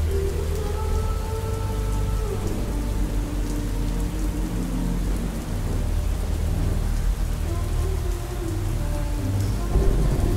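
Steady heavy rain with a low rumble of thunder, over faint held notes of a slow song that fade in and out.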